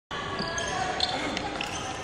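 Footsteps and a few short knocks and shoe squeaks on the wooden floor of a sports hall, echoing in the large room.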